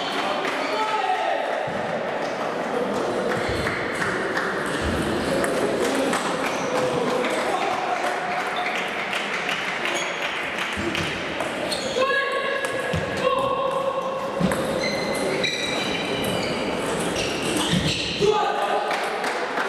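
Table tennis balls clicking on bats and the table in quick knocks, some with a short ringing ping. Under them runs the steady chatter of a large, echoing sports hall.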